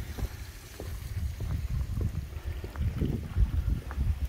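Wind buffeting the microphone as an uneven low rumble, with a few faint knocks.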